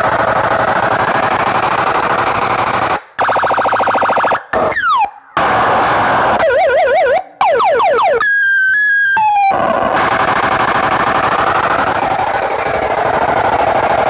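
Big DJ speaker stack of horn and bass cabinets playing an electronic sound-test track very loud: a dense, distorted wash cut by several sudden short dropouts. In the middle come siren-like wobbling tones and falling laser-style sweeps, then a stepped high beeping pattern.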